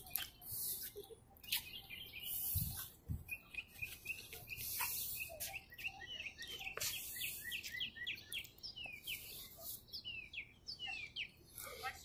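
Faint chirping of small birds: many short, quick chirps in rapid succession, busiest in the second half, over faint background hiss.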